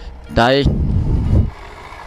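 A short vocal sound, then about a second of low rumble from a truck's engine close alongside as a motorcycle rides past it, over the motorcycle's steady running.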